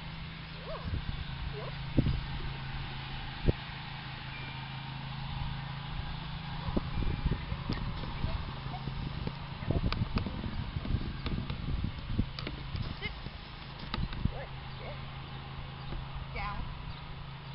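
Outdoor ambience with a steady low hum, a scattered run of light clicks and taps through the middle and latter part, and a faint voice at times.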